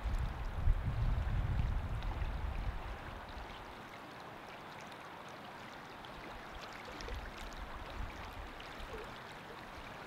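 Wind gusting on the microphone at a pond's edge, heaviest in the first three seconds and again near the end, over a steady wash of water lapping at the shore.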